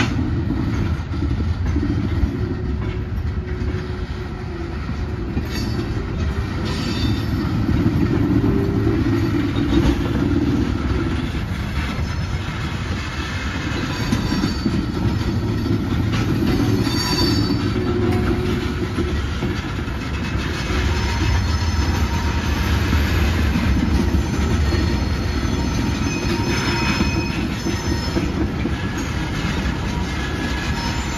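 A cut of railroad tank cars rolling slowly through a curve and crossing: steel wheel flanges squeal in short high tones and the wheels clatter over rail joints. Underneath runs the steady low rumble of a diesel locomotive, the Alco RS27, which grows a little louder in the last third as it comes closer.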